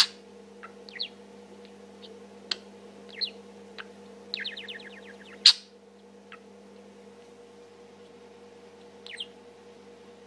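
Budgerigar chattering softly to itself: scattered short high chirps and clicks, with a quick run of about eight ticks near the middle. Sharp clicks come at the start and just past halfway. A steady low hum underneath cuts out at about the second click.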